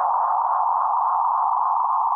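A steady electronic tone sound effect, mid-pitched and held at an even level, with no change in pitch.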